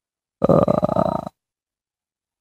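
A man's brief, creaky, drawn-out 'uhh' hesitation sound, lasting just under a second and starting about half a second in. Otherwise silent.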